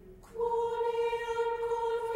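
Choir singing Latin sacred choral music: a low held note fades away, and about a third of a second in a new, higher note enters and is held steadily.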